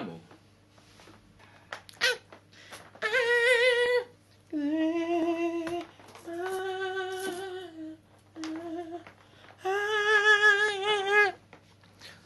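A man singing without words in a high voice: five long held notes with a wide, wobbling vibrato, each a second or more, with short clicks in the first two seconds.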